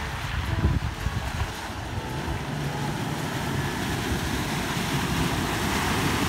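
A Toyota 4Runner driving through a shallow creek crossing: water sloshing and rushing against its wheels over a low engine rumble, building as the SUV comes close. Wind on the microphone.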